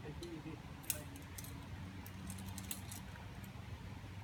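Metal climbing hardware (carabiners and protection gear) clinking and jingling in a string of light clicks, with one sharper click about a second in.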